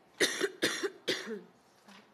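A person coughing three times in quick succession, about half a second apart, the last cough trailing off.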